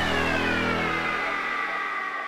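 A synthesized downward sweep at the tail of an electronic intro jingle: a pitched tone glides slowly down and fades out after the bass has dropped away.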